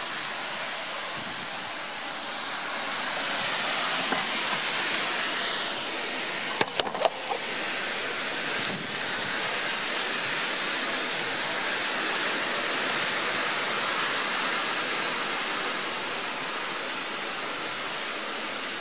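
Storm-force wind gusting through tall trees, a steady rushing noise that swells a couple of seconds in and stays up. A few sharp knocks come close together about seven seconds in.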